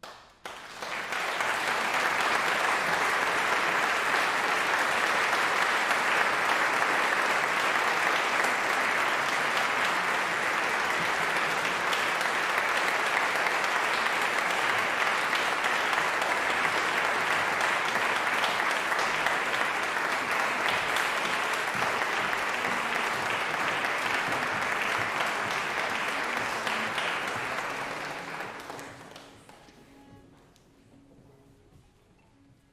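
Audience applauding: a dense, steady ovation that starts suddenly and fades out near the end.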